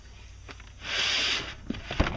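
A hand sliding and rubbing across a plastic lid for about half a second, with a few light knocks and a sharper knock near the end, over a steady low hum.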